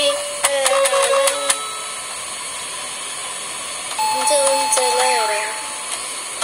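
A woman singing to a small electronic keyboard: a sung phrase, a pause of about two and a half seconds, then a held keyboard note with more singing over it.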